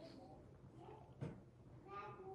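A baby making faint, brief cooing sounds, one about the middle and a rising one near the end, against a quiet room with a faint tick.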